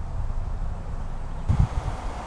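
Wind buffeting the microphone: an uneven low rumble with a stronger gust about one and a half seconds in.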